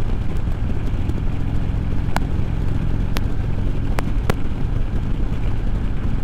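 Harley-Davidson Road King Special's V-twin engine running steadily at highway cruising speed, with the rush of road and wind noise. A few sharp clicks come through in the middle of the stretch.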